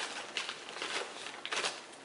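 Clear plastic bag crinkling and rustling in irregular bursts as it is opened and an inline fuse holder with its red wire is pulled out.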